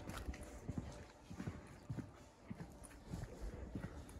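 Footsteps walking along a hard-packed dirt alley, about two steps a second, over faint outdoor background noise.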